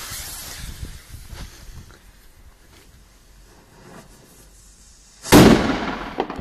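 Lit fuse of a La Bomba Polish firecracker (Polenböller) hissing and sputtering for about two seconds. Then, about five seconds in, a single very loud bang, with a short echoing decay.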